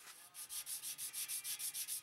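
Steel plane blade scrubbed back and forth on sandpaper laid flat on a jointer's iron bed, in quick, even strokes of about six or seven a second. This is flattening the back of the blade to remove shallow pitting near the edge.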